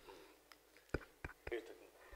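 A quiet pause with faint whispered speech and three short sharp clicks between one and one and a half seconds in.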